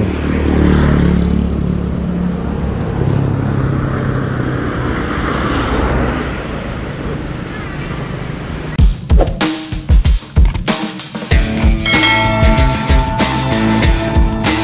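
A Yamaha Mio M3 scooter's single-cylinder engine running steadily at idle. About nine seconds in, background music with a drum beat suddenly takes over.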